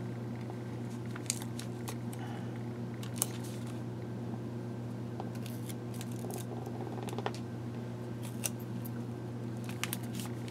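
Paper word stickers being peeled off their backing sheet and the sheet handled: scattered small clicks and crinkles, over a steady low hum.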